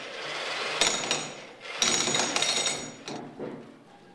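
Construction work on a building site: bursts of rapid, ringing metallic strikes from tools, in two clusters about a second apart over a steady rushing background, fading out near the end.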